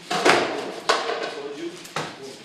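Kicks and strikes landing during martial-arts sparring and mitt work: three sharp slaps, the first and loudest just after the start, one about a second in and one at the end.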